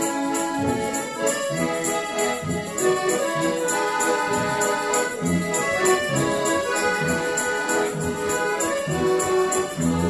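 Two piano accordions playing the instrumental introduction to a song: a melody over repeated low bass notes, with no singing yet.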